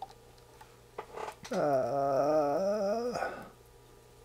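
A man's voice humming one low, wavering note for a little under two seconds, stepping up in pitch near its end, after a couple of soft clicks.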